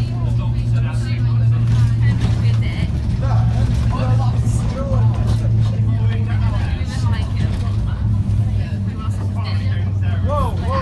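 Bus engine and road noise heard from inside the moving bus: a steady low drone, with faint voices of passengers talking now and then.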